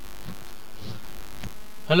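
Steady low electrical hum of the recording setup's microphone line, with a few faint soft low sounds. A man's voice starts right at the end.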